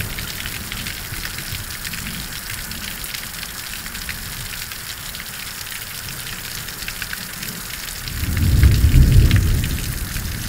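Steady rain falling, with scattered ticks of drops. About eight seconds in, a low rumble of thunder swells, peaks and dies away over about two seconds.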